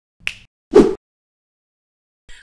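Two short snap-like sound effects about half a second apart, the second louder and lower, accompanying a channel's intro logo animation.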